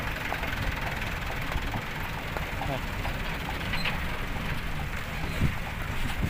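Diesel engines of loaded light 4x4 dump trucks running as they climb a muddy road, a steady low drone.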